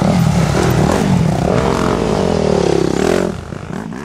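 Two dirt bike engines revving as the bikes ride past close by, their pitch falling as they go. The sound drops off after about three seconds and cuts out at the very end.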